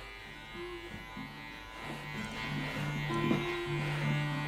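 Electric hair clippers with a grade four guard running steadily as they go over the hair, under soft background music with slow, held low notes.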